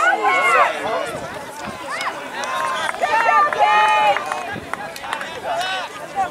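Several people shouting and calling out at once from the sidelines of a soccer game, their voices raised and overlapping. The shouting is loudest in the first second, then eases and swells again midway.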